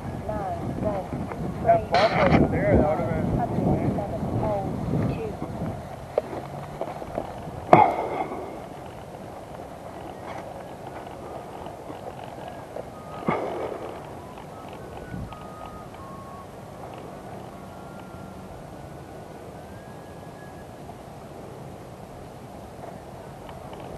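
Faint, indistinct voices over the first six seconds or so, with sharp knocks about two, eight and thirteen seconds in; after that only a low, steady background hiss.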